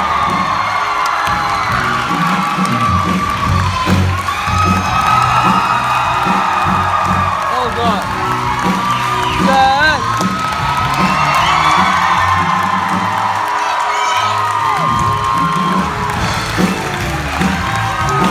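Live musical-theatre music with voices singing over a band accompaniment, and the audience cheering and whooping over it.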